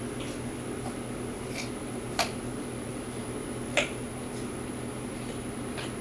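Raw carrots cracking, four or five sharp crunches spaced irregularly a second or more apart, as a deer bites carrots fed by hand and they are snapped into pieces, over a steady background hum.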